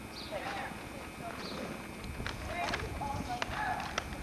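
Faint, distant voices with a few sharp knocks and taps in the second half, over a low rumble that grows about halfway through.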